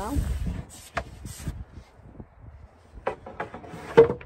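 A loose plywood drawer lid being lifted off a van's pull-out drawer and set aside: a few wooden knocks and scrapes, with a sharp knock at the very end.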